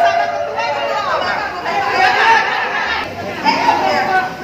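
Several people talking at once: indistinct, overlapping conversation of a gathering.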